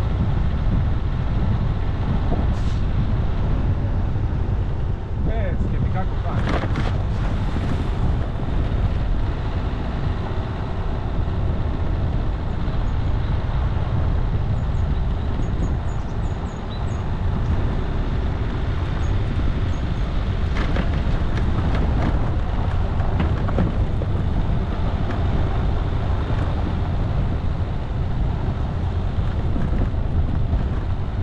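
A vehicle driving on a rough dirt forest road: a steady low rumble of engine and tyres on gravel, with clatters and knocks from the bumpy surface, thickest around six to eight seconds in and again around twenty-one seconds in.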